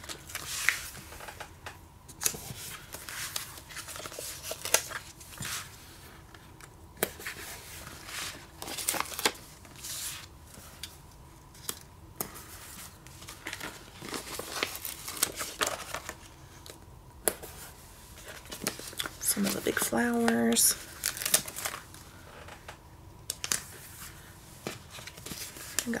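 Paper sticker sheets being handled and stickers peeled from their backing: irregular crinkling and tearing rustles of paper, with a brief hum from a voice about twenty seconds in.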